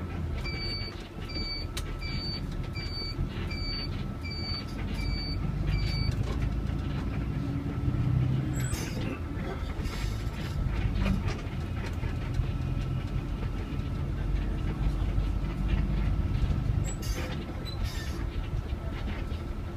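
City bus running in slow traffic, heard from inside the cabin: a steady low engine and road rumble. Over the first six seconds, a series of eight short electronic beeps repeats evenly, about one every three-quarters of a second.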